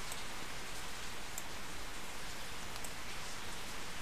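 A steady, even background hiss with no voice, broken by a couple of faint brief ticks.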